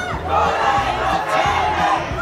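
Large crowd of marching protesters shouting and chanting together, many voices at once and loud.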